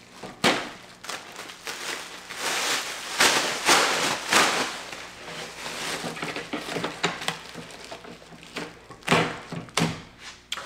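Close handling noises: irregular rustling and crinkling, thickest in the middle, with a sharp knock about half a second in and two more near the end.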